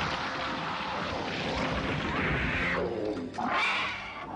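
Cartoon creature sound effect: a monster growling and snarling over a dense noisy rush, with a falling growl and a short snarl near the end.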